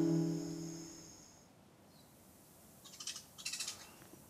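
An acoustic guitar chord rings out and fades away over about the first second, then it goes quiet. Near the end come a few short, high bird calls.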